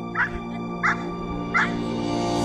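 A Belgian Malinois barking three times, short single barks about two-thirds of a second apart, over background music.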